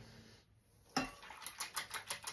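Near silence for about a second, then a whisk working in a saucepan of chai, giving a quick run of light clicks and taps against the pan.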